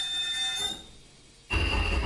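Live improvised electronic noise music from amplified devices played through small mixers: a cluster of steady high electronic tones that fades after about a second, then a loud burst of noise with a deep rumble and a high tone that cuts off suddenly at the end.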